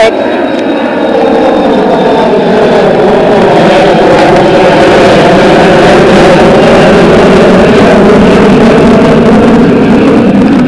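A jet aircraft passing low overhead, its engines loud and steady, swelling over the first couple of seconds, with a drone whose pitch sinks slowly.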